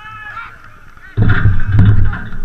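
Faint shouts from players across the pitch. A little over a second in, a sudden loud, deep noise starts close to the microphone.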